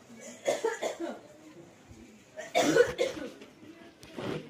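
A person coughing in two bouts about two seconds apart, the second louder.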